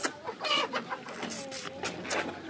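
A chicken clucking, a few short calls, with a few sharp clicks among them.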